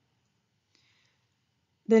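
Near silence with one faint, short click a little under a second in; a woman's voice starts at the very end.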